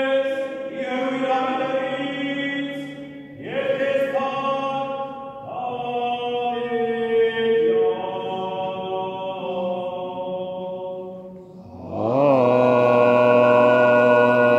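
Armenian church liturgical chant: slow sung phrases of long held notes, with brief breaks between phrases and a louder phrase entering near the end.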